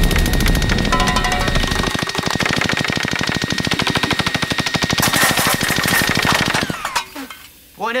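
Automatic paintball gun firing a long burst: a fast, even rattle of shots that cuts off just before the end.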